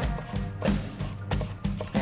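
Background music with a steady low bed, and a kitchen knife tapping a few times on a wooden cutting board as it finely chops parsley.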